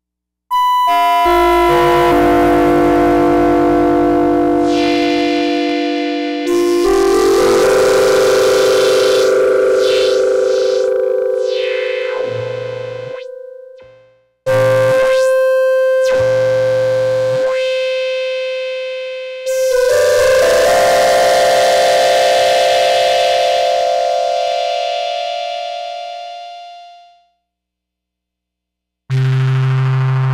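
Yamaha CS-50 analog polyphonic synthesizer playing four long held chords, each slowly fading away, with short gaps between them. Its tone is swept by hand during the middle chords.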